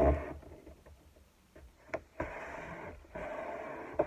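Paper being folded by hand on a tabletop, its crease pressed and rubbed flat. A knock at the start and a sharp tap near the middle are followed by two stretches of dry rubbing, each about a second long.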